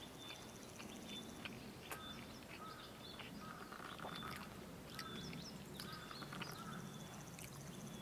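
Crows squabbling: a faint, busy string of short, overlapping calls.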